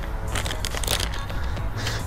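Crinkling and rustling of a plastic soft-bait bag as a small stick worm is pulled out of it, in short irregular crackles.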